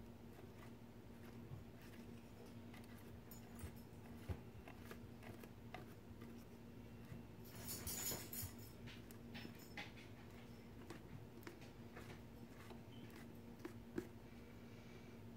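Faint dabbing and scraping of a brush working thick modeling paste through a plastic stencil: a scatter of small clicks, with a brief louder scrape about eight seconds in, over a steady low hum.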